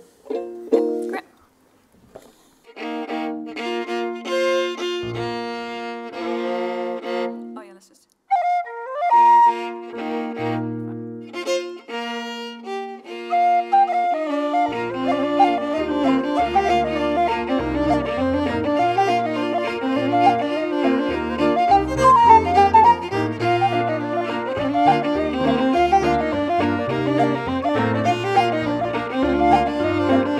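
Irish traditional reel on fiddle, flute and digital piano. It opens with slow held chords that break off briefly about 8 seconds in. Then, about 15 seconds in, the reel starts at full pace, with piano bass notes under a fast fiddle and flute melody.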